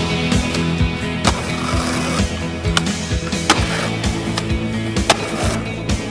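Skateboard sounds: wheels rolling on pavement and a few sharp clacks of the board hitting and grinding a ledge and landing, under a music soundtrack.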